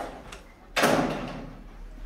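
A single sudden bang about three quarters of a second in, dying away over about a second.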